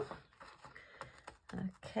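Scissors cutting the blank edge of a diamond-painting canvas: a few faint, scattered clicking snips, with two sharper ones about a second and a second and a half in.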